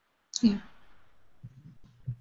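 A single short spoken "yeah" heard over a video call, with faint low murmur after it.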